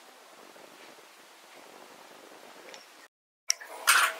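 Faint room tone with a little camera hiss. The sound drops out completely for a moment about three seconds in, where the recording is cut, then a sharp click and a short noise follow near the end.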